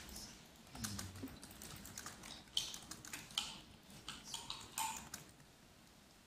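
Computer keyboard and mouse being operated: an irregular run of light key and button clicks that stops about five seconds in.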